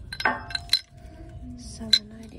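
Four sharp clinks and knocks of decor pieces on a store shelf knocking together as one is picked up. The two loudest come about three-quarters of a second in and just before the end. Faint background music plays underneath.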